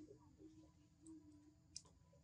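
Near silence, with a faint low tone that fades out about halfway through, a few small ticks, and one sharper click near the end.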